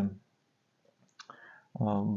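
A man's speaking voice breaks off into a short pause, with a few faint clicks in the pause, then speaks again near the end.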